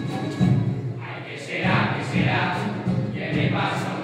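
Carnival murga group: a male chorus sings together over strummed acoustic guitars, with the voices coming in about a second and a half in.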